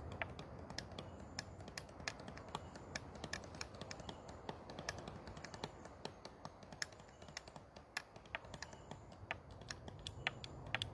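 Light, sharp clicks at an irregular rate, several a second, over a faint steady hiss.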